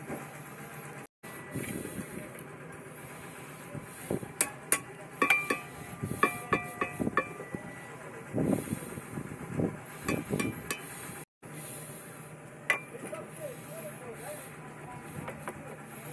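Sharp taps and knocks, a few with a brief metallic ring, as concrete blocks are tapped into plumb against a spirit level; the taps come in a cluster through the middle of the stretch.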